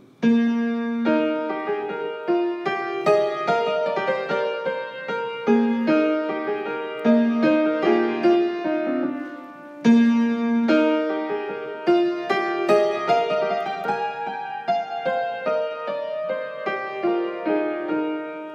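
Keyboard with a piano sound playing the instrumental opening of a choral rehearsal track: a moderate-tempo melody over a lower line, taking the melodica and solo parts, with a short break about halfway.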